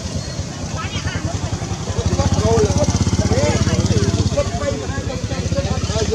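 A small engine running steadily with a fast, even low throb, louder from about two seconds in, with people's voices talking over it.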